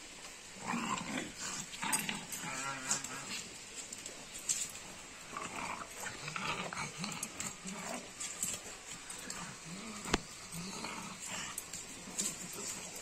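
Repeated short, low animal whines and moans, most under a second long, with one longer call about two seconds in and a sharp click about ten seconds in.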